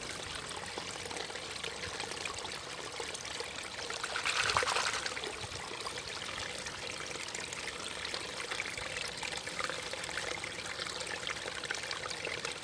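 Shallow brook running steadily over its bed in a narrow channel, with a brief louder swell about four to five seconds in.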